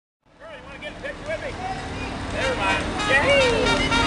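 People's voices calling and shouting, with a warbling call early on and the calls getting louder and busier, over a steady low engine hum.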